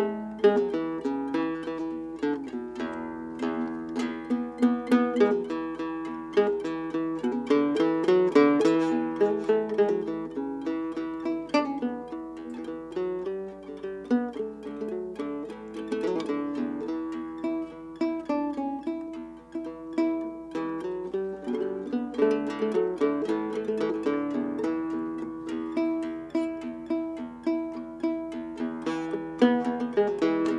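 Solo instrumental fingerpicking on a small-bodied acoustic string instrument: a continuous run of quick plucked notes with a repeating melodic figure.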